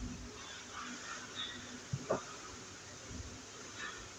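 Paternoster lift running as its open cabin passes a floor: a faint steady hum of the drive, with two short knocks from the moving cabin about two seconds in.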